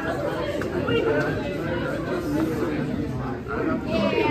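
Many overlapping voices chattering in a large, echoing room: a crowd of teenagers talking at once.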